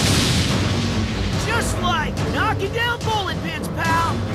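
A cartoon blast-and-explosion sound effect as an energy attack hits. It fades after about a second and is followed by several short shouted cries, all over dramatic background music.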